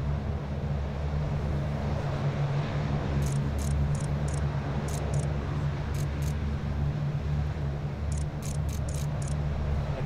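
M142 HIMARS launcher truck's diesel engine running with a steady low drone as it drives slowly out of a transport aircraft's cargo hold. A scatter of brief, high ticks sounds through the middle.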